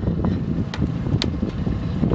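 Wind buffeting the microphone, a steady low rumble, with two short light clicks about a second apart near the middle.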